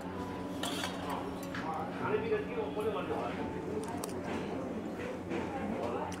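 A fork and spoon clinking and scraping on a metal thali plate as food is mixed, with a few sharp clicks scattered through. Background voices murmur over a steady low hum.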